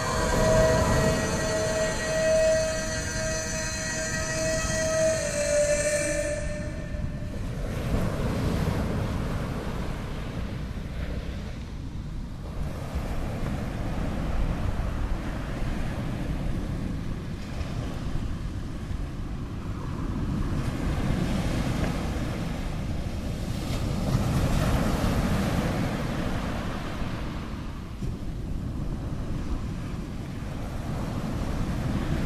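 Held notes of music end about six seconds in, giving way to a steady rushing noise that swells and ebbs every few seconds.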